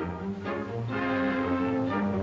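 Orchestral film-score music, with bowed strings playing sustained notes.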